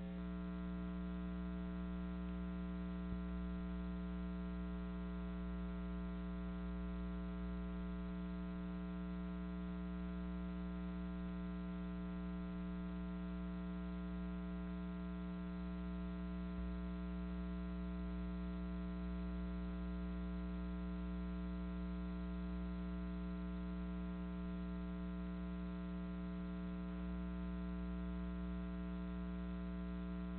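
Steady electrical mains hum with a stack of even overtones, unchanging throughout: the sound of a dead broadcast feed that carries no programme audio, only hum on the capture line.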